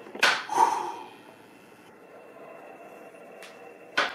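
A man says a single loud, short word of encouragement early on, with a sharp onset. After it comes quiet room tone with one faint click.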